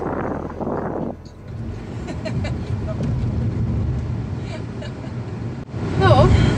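Steady low road-and-engine rumble inside a moving car's cabin, starting about a second and a half in after a short stretch of rushing noise.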